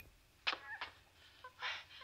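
Faint, short high animal squeals in two brief bursts, from a lab monkey kept for a nicotine addiction study.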